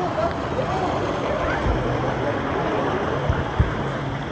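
Churning water-park river water rushing and sloshing around a camera held at the surface, with a low rumble on the microphone and faint voices of other riders. A couple of dull knocks near the end.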